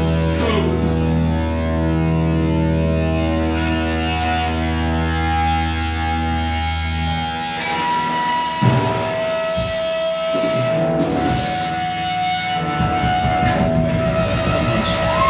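Live rock band playing loud with electric guitars and bass. A low bass note and sustained guitar tones are held through the first half and cut out about halfway, after which drum hits and new held guitar notes come in.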